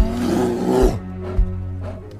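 A bear's growl lasting about a second, over film score music with long held notes, followed by a short thud.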